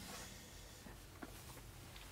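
Faint rustling and a couple of soft taps from hands handling things, over quiet room hiss.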